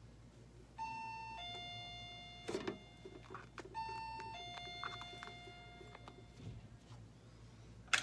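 An electronic two-tone chime, a high note stepping down to a longer lower one, sounds twice about three seconds apart, over faint knocks of handling.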